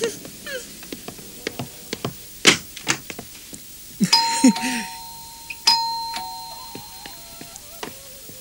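Two-tone electric doorbell chime rung twice, each ring a higher note followed by a lower one that rings on and fades. A few sharp clicks come before it.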